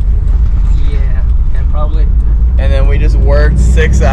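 Steady low road and engine rumble inside a moving vehicle's cabin, with a man's voice over it in the second half.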